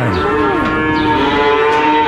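Calves bawling: one long, steady moo held throughout, with a shorter call from another calf overlapping it near the start.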